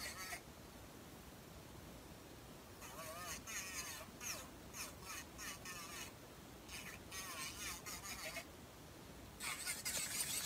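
A faint, distant voice in short broken stretches over low room noise.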